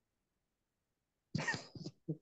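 A person's short cough-like burst over a call microphone, starting suddenly about a second and a third in after near silence.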